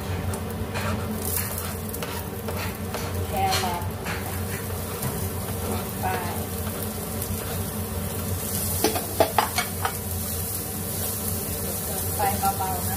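Spatula scraping diced carrot and Chinese sausage into a nonstick frying pan and stirring them as they sizzle in hot oil, over a steady low hum. A quick run of sharp knocks from the spatula comes about three quarters of the way through.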